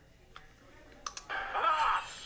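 Animated cartoon soundtrack playing through a tablet's small speaker: a quiet stretch with a few light clicks, then a character's voice coming in loudly just over a second in.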